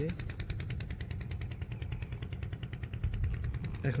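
Small boat engine running steadily with a rapid, even knocking beat.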